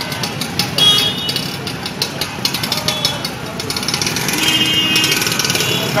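Street traffic in a jam: motorcycle and scooter engines running at low speed, with the voices of a crowd around them.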